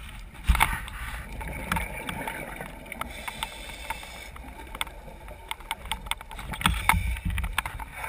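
Underwater sound picked up through a camera housing on a scuba dive: a low rumble with scattered sharp clicks and knocks. There is a short rush of scuba exhaust bubbles about half a second in.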